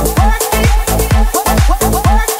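Electronic dance music from a continuous DJ mix: a house-style beat with a steady four-on-the-floor kick drum, about four kicks a second, each kick dropping sharply in pitch, under a bassline and synth parts.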